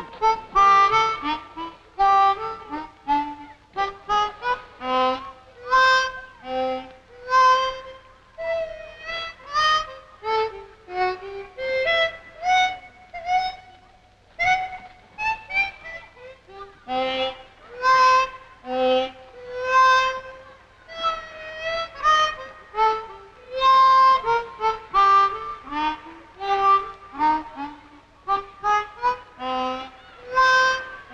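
Film score: a solo harmonica playing a melody of short, separate notes in repeating phrases.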